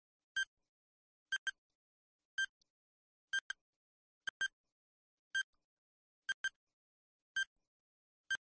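Countdown-timer ticking sound effect: a short, sharp, slightly pitched tick about once a second, some ticks single and some doubled, with silence between, marking the seconds as the answer time runs down.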